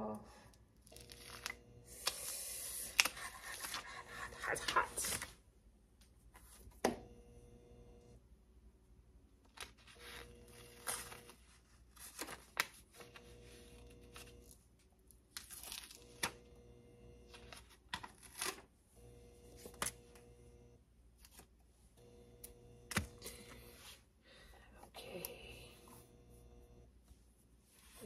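Paper and tape being peeled and crinkled off freshly heat-pressed sublimation socks: a few seconds of tearing rustle, then scattered rustles and clicks of handling.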